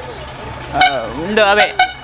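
Men's voices speaking loudly in short bursts, over a steady low rumble.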